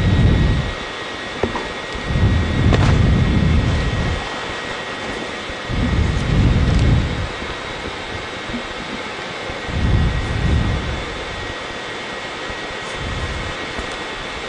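Steady hiss of the space station's cabin ventilation fans, carrying two faint steady tones. Four low rumbles of a second or so each break over it, from the microphone being buffeted as the camera moves through the hatch past the ventilation duct.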